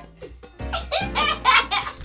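A man laughing in a loud burst of about a second, starting just over half a second in, over background music with a steady bass line.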